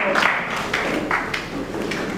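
Audience applause in a large hall, a dense patter of claps that gradually dies away.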